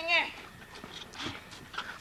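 A man's voice for a moment at the start, then faint soft thuds of feet on a tarp-covered wooden ring platform.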